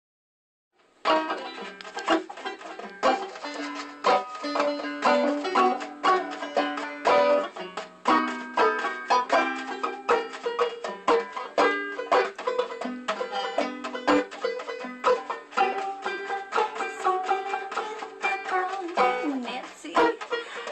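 A banjo played solo, starting about a second in, with a steady beat of sharp plucked strokes roughly once a second.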